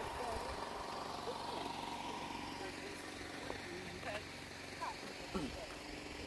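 Faint voices of people talking at a distance, over a steady low hum and outdoor background noise.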